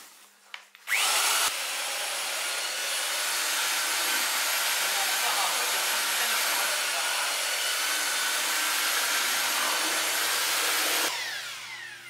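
Handheld electric paddle mixer starting up about a second in with a brief rising whine, then running steadily at full speed as it churns plaster in a plastic bucket, and winding down near the end.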